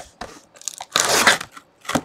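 A cardboard box being cut and torn open by hand: a run of short scrapes and crunches of cardboard and tape, the longest and loudest about a second in.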